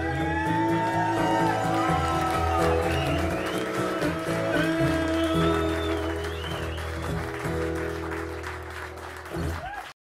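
Live music: an electric guitar playing over sustained low bass notes, with some sliding high notes, cutting off suddenly near the end.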